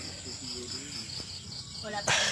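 Insects chirping outdoors: a steady high-pitched pulsing chorus, about four or five pulses a second, with a thin steady whine above it.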